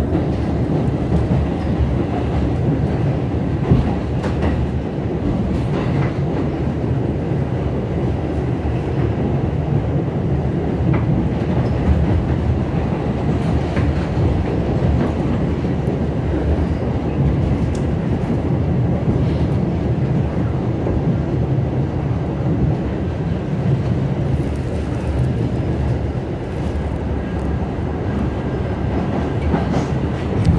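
New York City subway N train running at speed, heard from inside the car: a steady low rumble with a few sharp wheel clicks scattered through it.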